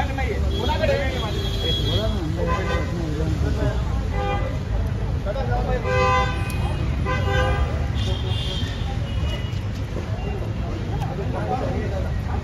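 Vehicle horns tooting several times in short steady blasts over a constant rumble of street traffic, with people's voices in between.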